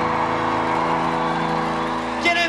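Final chord of a live rock band held and ringing out as steady sustained tones, with no drums, as the song ends. Crowd noise from a large audience runs underneath.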